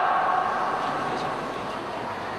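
The tail of a long, loud shout from a martial arts performer fades out in the first half second, ringing in a large hall. After it comes the steady background murmur of the hall.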